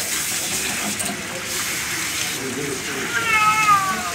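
Hand sprayer hissing steadily as water rinses a wet cat, and about three seconds in the cat gives one drawn-out meow that falls slightly in pitch.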